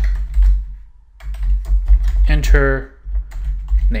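Rapid keystrokes on a computer keyboard as a short phrase is typed, with a brief pause about a second in.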